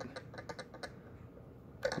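Light clicking of a pinion gear against the spur gear as the spur is rocked back and forth by hand: a quick series of faint clicks in the first second. That little bit of click is the gear backlash, used by ear to check that the mesh is set right.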